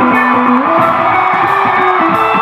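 Live band playing loud: electric guitar lines over bass, drum kit and hand percussion, with the pitched notes shifting as the riff moves.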